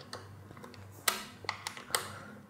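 A handful of light, sharp clicks and taps, most in the second half, as screws are tightened on a Xiaomi Ninebot Mini self-balancing scooter with a hand tool.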